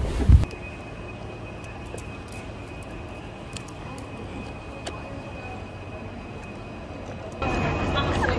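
Steady low outdoor street rumble with a faint, steady high-pitched whine above it and a couple of faint ticks. Near the end, louder street sound with voices takes over.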